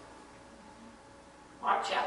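A pause in a man's speech with only quiet room tone, then his voice starts again near the end.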